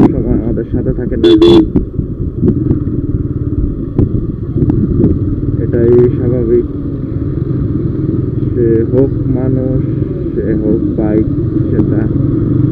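Single-cylinder engine of a TVS Apache RTR 160 motorcycle running at low speed, with steady road noise, heard from the rider's helmet camera. A short, loud burst comes about a second and a half in.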